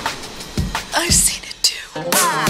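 A drum and bass DJ mix at a breakdown. The drums and bass drop out, leaving a sparse vocal with whispered, hissing sounds and a few sliding notes.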